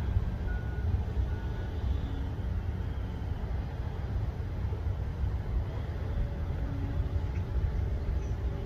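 Low, steady rumble of distant heavy machinery: a tipper truck unloading sand and a tracked excavator running. Two or three faint short beeps sound in the first second or so, like a reversing alarm.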